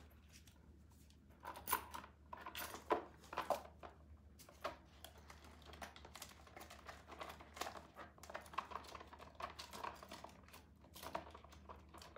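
Plastic cards clicking and tapping against one another as they are handled and slid into a small handbag, in faint, irregular clicks.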